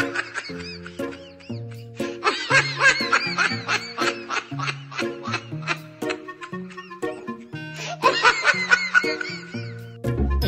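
Comic background music with a bouncing bass line that steps to a new note about every half second. Bursts of laughter come in over it, strongest in the middle and near the end.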